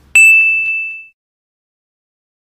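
A single bright metallic ding that starts suddenly and rings on one clear high tone, fading away within about a second, then cut to dead silence.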